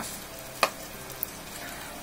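Yakisoba noodles bound with egg sizzling steadily in an oiled frying pan, left untouched so the underside browns. A sharp click sounds about half a second in.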